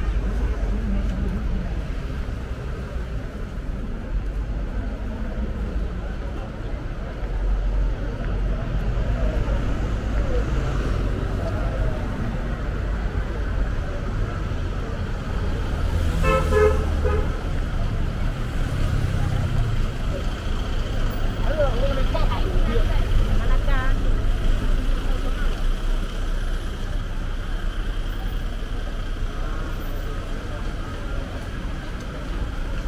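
Busy street ambience with a steady low traffic rumble and background voices. A vehicle horn honks briefly, with a quick beeping pulse, a little past halfway through.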